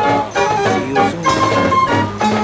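Fairground band organ playing a tune on its pipes, with drum and cymbal beats.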